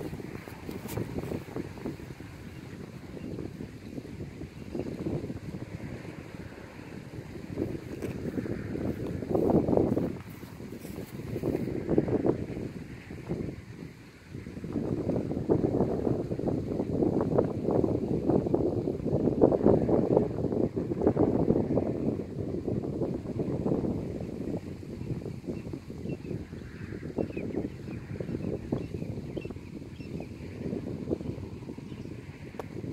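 Wind buffeting the microphone: a low rumble that swells and eases in gusts, with a brief lull about 14 seconds in.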